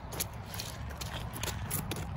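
A child's footsteps in rubber rain boots on a wet, muddy path, a series of light steps over a low rumble.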